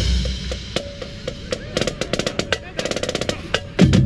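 A college marching drumline of snare drums, tenor drums and bass drums playing a cadence. The loud playing breaks off into a ringing wash and a quieter stretch of scattered strokes. A quick run of strokes follows, and the whole line comes back in loud near the end.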